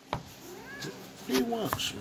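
A pet cat meowing: a faint arched call around the middle, then a louder bending one near the end, over the scratchy rubbing and clicks of the cat's fur and the petting hand against the phone's microphone.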